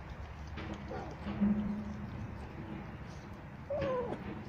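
Cats eating wet food from a plate, with faint chewing clicks, a low drawn-out call about a second and a half in, and a short falling meow near the end.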